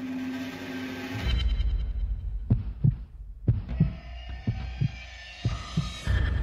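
Podcast intro music: a held chord ends about a second in and gives way to a low rumble under paired, heartbeat-like thumps, about one pair a second.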